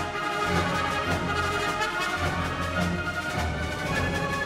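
Orchestral soundtrack music with brass, playing steadily.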